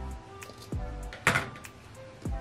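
Scissors being handled over a cutting mat: a couple of light clicks, then one sharper clack a little over a second in, over soft background music.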